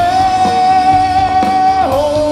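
Live punk rock band playing loudly: a voice holds one high note for nearly two seconds, dipping in pitch near the end, over electric guitars and drums.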